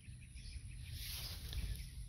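Faint outdoor background: a low rumble with a thin, steady high-pitched tone running under it.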